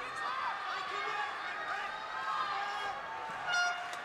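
Crowd noise with indistinct voices, then near the end a short electronic buzzer sounds: the end-of-fight buzzer closing the contest.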